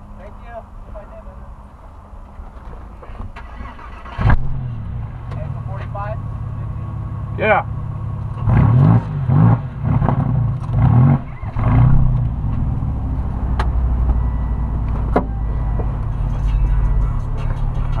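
A car engine starts about four seconds in, is revved a few times in the middle, then runs at a steady idle.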